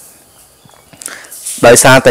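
A short pause in speech with only faint room noise and a few soft ticks. Then a voice starts speaking again near the end.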